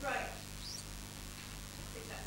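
Quiet room tone in a lecture hall with a steady low electrical hum. A brief faint voice trails off at the very start, and a faint short high squeak comes just under a second in.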